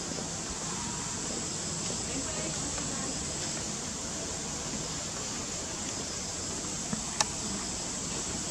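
Steady background hiss with faint, indistinct voices of people. A single sharp click comes about seven seconds in.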